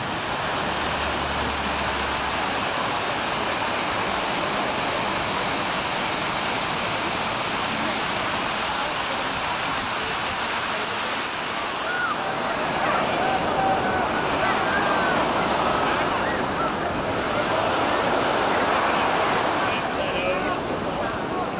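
Water falling over an artificial rock waterfall: a steady rushing splash. Voices come and go behind it over the second half.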